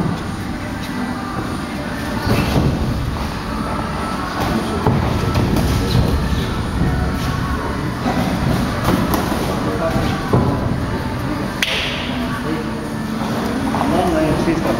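Boxing sparring in the ring: scattered thuds of gloves landing and feet shuffling on the canvas, over indistinct voices and gym room noise.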